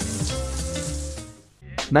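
Closing audio of a worn videotape recording of an old Apple TV commercial: a held musical chord over steady tape hiss, fading out about a second and a half in. A man's voice begins near the end.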